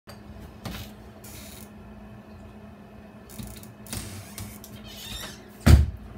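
Rustling and handling noises from a person moving close to the microphone, over a steady low hum. A single loud thump comes near the end.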